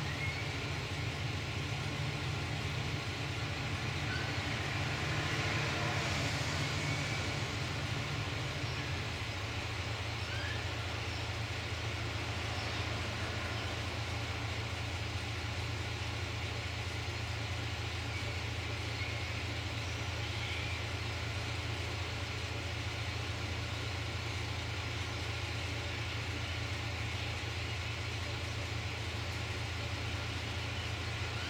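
Diesel railcar engine idling while the train stands at a station: a steady low hum that steps down slightly in pitch about nine seconds in.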